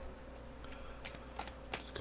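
A deck of tarot cards being shuffled by hand, softly, with a couple of sharper card clicks in the second half.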